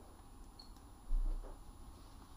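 Faint background room tone with one brief, deep thud about a second in.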